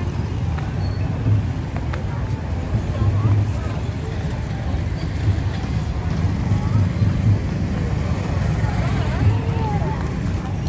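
City street ambience: a steady rumble of traffic with people talking in the background, voices a little clearer near the end.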